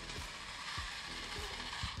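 Small DC gear motors of an Arduino robot car running with a steady, gritty hiss, under faint background music.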